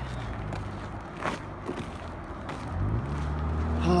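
Road traffic rumbling by, with one vehicle's engine note rising in pitch near the end as it speeds up. There is a single faint click a little over a second in.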